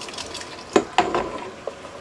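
A few light knocks and scrapes of a utensil against a stainless steel cooking pot on a gas hob, the two sharpest about three-quarters of a second and a second in, with a smaller tap later.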